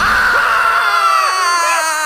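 A person's long, shrill scream, held for the whole two seconds and sliding slowly down in pitch.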